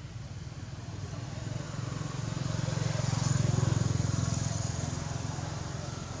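A motor vehicle passing by: a low engine hum that swells to its loudest a little past the middle and then fades away.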